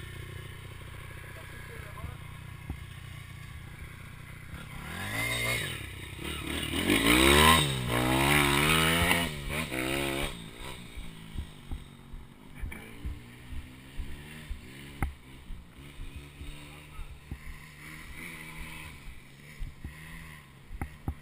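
Pit bike engine running at a low steady idle, then revved up and down several times, rising and falling in pitch, before dropping back to a low run with irregular clicks and knocks.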